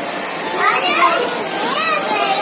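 Young children chattering and calling out, high voices overlapping, with no clear words.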